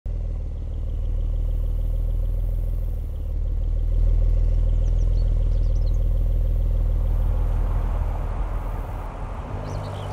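Bentley Continental GT convertible's engine running low and steady, swelling about four seconds in and thinning out near the end, with a few faint bird chirps.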